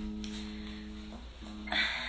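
Acoustic guitar being tuned: one plucked string rings for about a second, then is plucked again briefly. A short noisy sound comes near the end.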